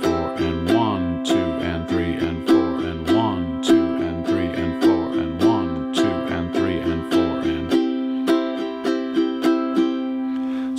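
Ukulele strumming a C chord slowly and evenly in a down, down-up, down-up, down-up pattern.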